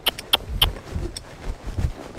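A horse trotting under saddle on soft arena dirt: dull hoofbeats about twice a second, with sharp clicks from the tack.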